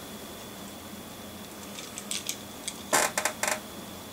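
Faint room tone, then from about two seconds in a scatter of small clicks and taps, busiest about three seconds in, as a small toy car is handled and turned over in the fingers.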